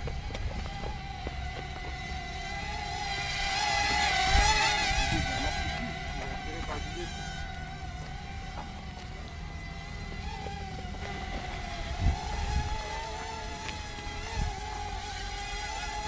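Small electric quadcopter's four motors and propellers whining while it hovers, the pitch wavering constantly as the motors correct; it grows louder about four seconds in as it comes close. A few dull low thumps are heard along the way.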